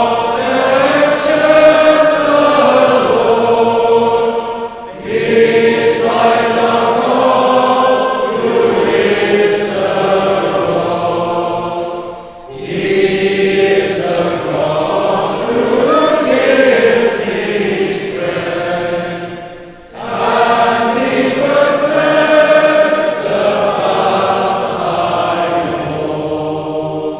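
Congregation singing a metrical psalm together, in four long sung lines with short breaths between them.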